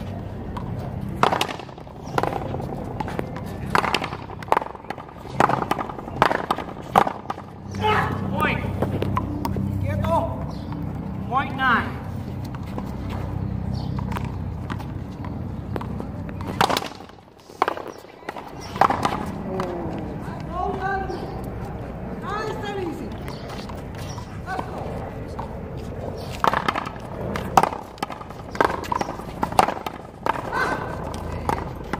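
Small rubber ball struck by paddles and racquets and smacking off a concrete wall during a one-wall paddle-game rally: irregular sharp cracks, sometimes several within a second, with people talking in between.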